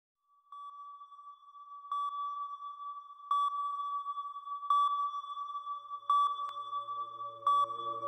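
Synthesized opening of an electronic DJ mix: a steady high tone struck by a short bright ping with a quick echo about every second and a half, six times. A low drone and mid tones fade in during the second half as the track builds.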